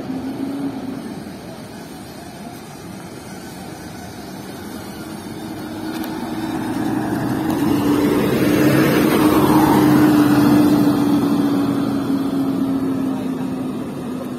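A coach bus's engine running as the bus drives slowly past close by. It grows louder toward the middle, is loudest for a few seconds as the bus goes by, then fades as the bus moves away.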